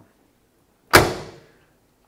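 The passenger door of a 1984 GMC Caballero being shut: one sharp slam about a second in, dying away within half a second.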